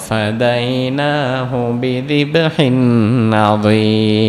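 A man's voice melodically reciting an Arabic Quranic verse in long held notes with slow pitch glides, in the chanted style of Quran recitation rather than speech.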